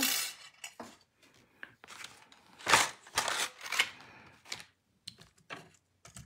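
Thin metal die-cutting dies clinking and clattering as they are handled and set down on a cutting mat, along with paper handling. It comes as a few short clinks, the loudest about three seconds in.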